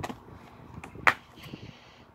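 Plastic 4K Ultra HD disc case being handled and opened: a small click at the start, then one sharp snap about a second in.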